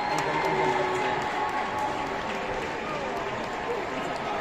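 Stadium crowd applauding from the stands, a steady spread of clapping mixed with distant voices and calls.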